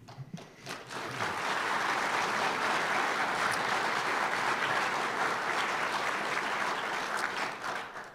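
Audience applauding. It builds over the first second, holds steady and tapers off near the end.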